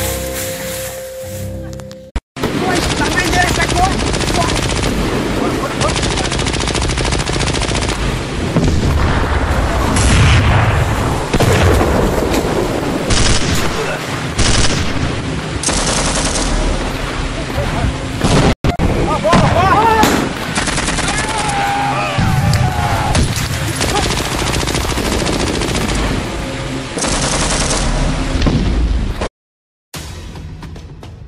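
Rapid, continuous gunfire and machine-gun fire, dubbed-in sound effects for an amateur war film, with other sound mixed underneath. It starts about two seconds in, goes on with a brief break in the middle, and cuts off suddenly just before the end.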